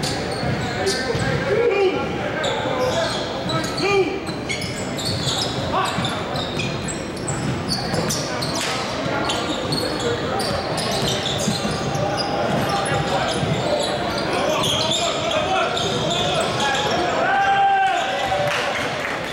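A basketball dribbled on a hardwood gym floor during play, with sneakers squeaking and players calling out, in a large gym.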